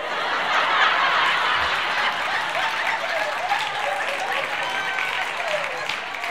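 Audience laughing and applauding. The sound swells at once, is loudest about a second in, and slowly dies down.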